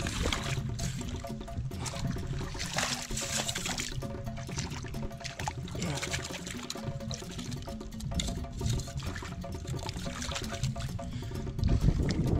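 Water sloshing and splashing in irregular bursts as a mussel-crusted bowl is swished and rinsed by hand in shallow river water, under steady background music.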